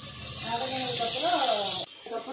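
Mostly speech: a woman talking over a steady high hiss. Both stop abruptly near the end.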